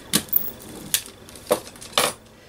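Four or five sharp clicks and taps, the loudest right at the end, from a hand brayer rolled over a paper tag and then set down on a cutting mat.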